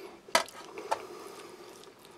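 A ceramic bowl and a plastic spoon being handled on a metal mess tray: two short clicks, about a third of a second and about a second in, the first louder.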